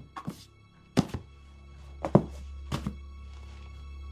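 Several dull thuds, mostly in close pairs, over a low, steady musical drone from a horror film soundtrack.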